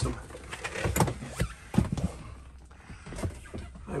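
Handling and movement noises: several sharp knocks and rustles bunched between about one and two seconds in, then quieter rustling, as someone shifts about in the seats and moves the phone.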